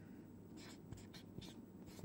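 Felt-tip marker writing on a paper chart: a string of faint, short scratching strokes.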